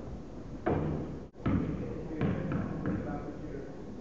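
Spectators' voices calling out in a gym, with a basketball bouncing on the hardwood court. The sound briefly cuts out just over a second in.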